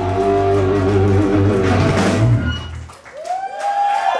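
Live rock band with electric guitars, bass and drum kit holding a final chord with a cymbal crash. The chord rings out and stops about three seconds in, and a voice shouts briefly near the end.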